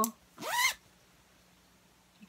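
A short vocal sound rising in pitch, about half a second in, then quiet room tone.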